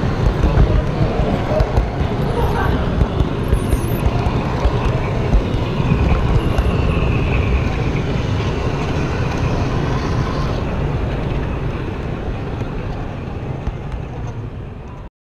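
Rumble and clatter of an HO scale model train running along its track, heard from a camera riding on the train, with the chatter of visitors in the hall. It fades down over the last few seconds.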